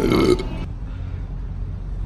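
A man's short burp, lasting about half a second, after eating pizza. It cuts off abruptly to a steady low background rumble.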